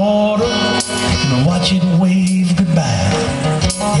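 Live song performance: acoustic guitar strumming over a moving low bass line, with sharp percussive hits. A man's singing voice comes in near the end.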